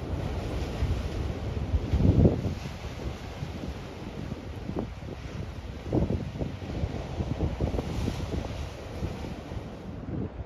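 Ocean surf breaking, with wind buffeting the microphone in gusts, loudest about two seconds in and again around six seconds.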